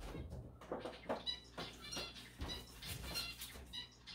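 Pet bird chirping in several short, high calls, with a few soft knocks from a cupboard being rummaged.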